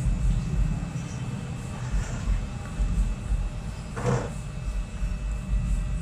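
Steady low background rumble, with one short noisy sound about four seconds in.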